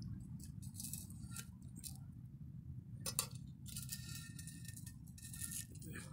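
Old, hardened toilet wax ring being scraped and picked off the porcelain outlet horn of a toilet: several short, faint scratchy scrapes, the longest about four seconds in, over a low steady background rumble.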